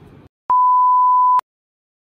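A single steady, pure electronic bleep, just under a second long, edited into the soundtrack like a censor bleep, with the sound cut to silence before and after it.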